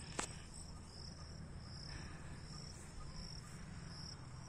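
Crickets chirping in a run of short, high-pitched trills repeating about twice a second, over a low steady rumble, with a single click just after the start.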